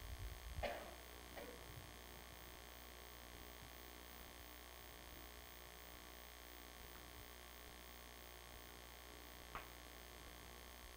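Near silence: room tone with a faint, steady low hum. There is a brief faint sound under a second in and a small tick near the end.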